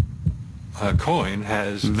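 Two short, low thumps a quarter second apart at the start, then a man's voice speaking from about a second in.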